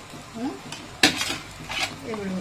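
A perforated steel skimmer spoon scraping against the metal pressure-cooker pot while cooked biryani rice is scooped out, with a sharp metal knock about a second in.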